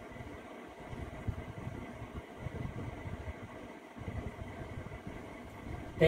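Low, uneven background rumble with a faint steady hiss.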